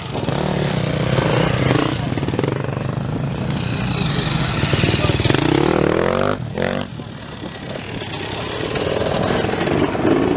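Off-road enduro motorcycle engine running and revving, its pitch rising steeply about five seconds in as the bike accelerates away, then dropping off briefly.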